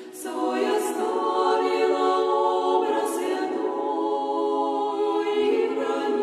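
Orthodox women's monastic choir singing unaccompanied in several-part harmony. A brief breath-pause at the very start is followed by a new sustained phrase.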